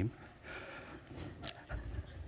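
A man's quiet breath into a close headset microphone, a soft hiss, followed by a small click and a brief low bump near the end.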